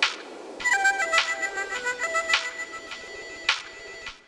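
Electronic music played live on a Korg Electribe 2 groovebox through effects pedals: a synth melody of short stepped notes comes in just under a second in over a hazy noise layer, with a sharp percussive hit about once a second.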